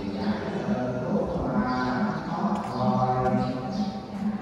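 Buddhist chanting: a voice holding long, slowly gliding notes, one after another with no break.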